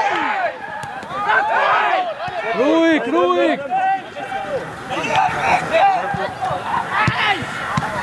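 Football players shouting and calling to each other on the pitch, several men's voices overlapping in short calls, with two sharp knocks near the end.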